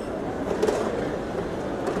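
Ambience of a large, busy airport terminal hall: a steady rumbling hum with indistinct distant voices mixed in.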